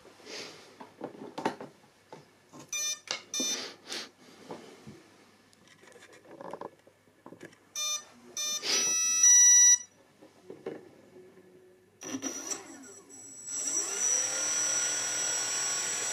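Clicks of handling, then an RC speed controller playing its arming beeps through the motor: two runs of short tones, the second louder and ending in a longer tone. About twelve seconds in, the electric motor starts and spins an APC 7x4 propeller up, rising in pitch and then holding a steady high whine.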